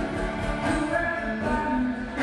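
Live acoustic folk band playing, with bowed fiddle and upright bass, and voices singing over it.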